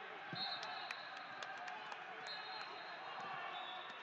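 Large echoing sports hall with people talking across the room. A scatter of sharp knocks and thuds falls mostly in the first half, and a faint high whine comes and goes.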